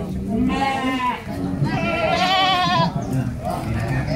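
Goats bleating twice: a short bleat about half a second in, then a longer, louder, quavering bleat around two seconds in, over low background chatter.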